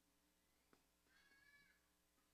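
Near silence, broken by a faint tap and then a faint squeak of steady pitch lasting well under a second: a marker writing on a whiteboard.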